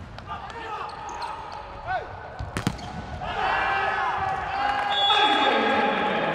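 Indoor volleyball rally: a few sharp ball strikes and short sneaker squeaks on the court floor. From about three seconds in, players' shouts and crowd cheering rise and grow louder as the point ends.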